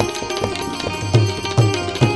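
Electric Indian banjo (bulbul tarang) playing a quick run of plucked, keyed notes over tabla, the low drum strokes bending downward in pitch.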